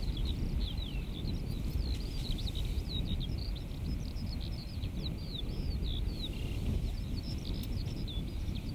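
Wind buffeting the microphone as a steady low rumble, with a small songbird singing a continuous run of short, quick high chirps over it.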